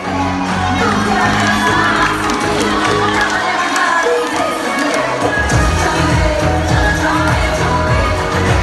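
Upbeat pop dance-challenge music with a sung vocal over crowd cheering and shouting; a heavy bass beat comes in about five seconds in.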